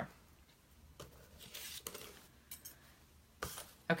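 A few light clicks and taps of small craft supplies, such as thin metal dies and cardstock, being handled on a tabletop, with a sharper click near the end.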